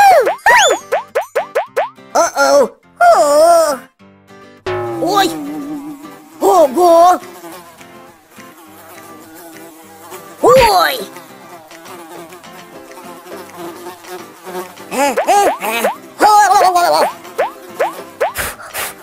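Cartoon sound effect of a swarm of houseflies buzzing, heard most plainly in the quieter middle stretch, under children's background music. Wordless cartoon voice sounds with swooping pitch come in the first few seconds, once about ten seconds in, and again near the end.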